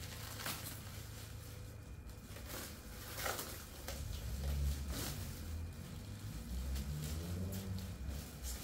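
Thick plastic foil crinkling and rustling in irregular short crackles as a sticky chocolate biscuit mixture is pressed and spread on it by hand, over a low steady rumble.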